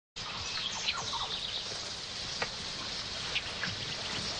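Jungle ambience: birds chirping in short falling notes over a steady high hiss of insects, with a few sharp ticks later on.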